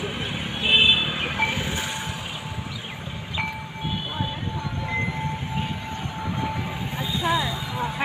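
A hand-held singing bowl rubbed around its rim with a wooden stick, giving a steady ringing tone. The tone comes in about a second and a half in and holds for several seconds before dying away near the end, with a few brief higher overtones along the way.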